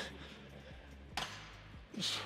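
Forceful breathing of a lifter working through a set of seated cable rows: a short, sharp breath about a second in and another loud one starting at the very end, over faint background music.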